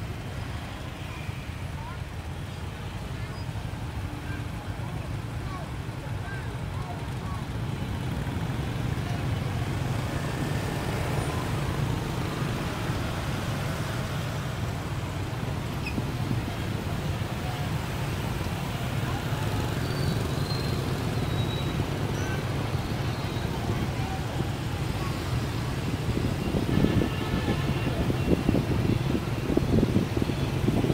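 Dense motorbike and scooter traffic heard from a moving motorbike: a steady mix of small engines and road noise with faint voices, growing louder toward the end.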